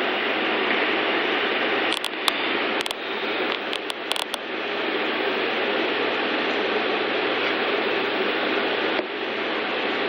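Steady hiss of recording noise with no speech, broken by a few light clicks about two to four seconds in.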